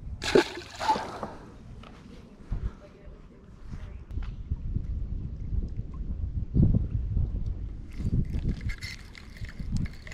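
A largemouth bass, released from hand, splashes into the lake about half a second in. A low rumble follows and grows louder in the second half.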